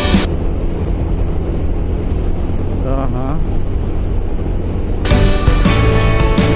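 Background music stops a moment in, leaving the ride sound of a Sym MaxSym 400 scooter at road speed: a steady low rumble of wind and engine, with a brief voice-like sound about three seconds in. The music comes back near the end.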